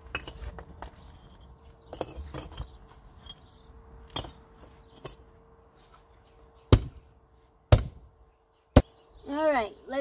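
Hand tamper pounding dirt to level it: a series of strikes, soft at first, then three sharp, loud ones about a second apart near the end.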